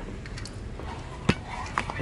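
Two metal aerosol spray paint cans held together in one hand, knocking against each other: a few light clicks and one sharp clink about a second in, over steady low room noise.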